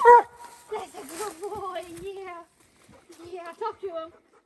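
Redbone coonhound barking up the tree it has treed a raccoon in: a loud short bark right at the start, then more wavering, drawn-out barks.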